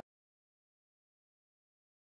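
Silence: no sound at all.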